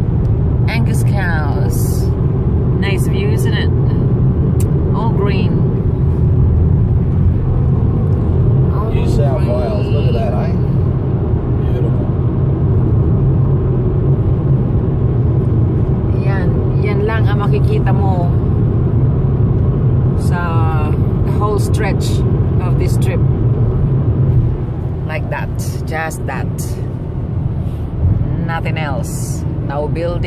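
Steady road and engine rumble heard inside the cabin of a car driving along a highway. It drops somewhat in level about 24 seconds in.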